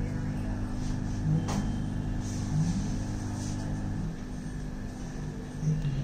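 AC induction motor humming steadily under TRIAC speed control. Its hum changes about four seconds in as the speed is stepped up. A faint click sounds about one and a half seconds in.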